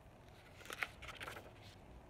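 A picture book's paper page being turned: a brief, faint rustle with a sharper crackle just under a second in.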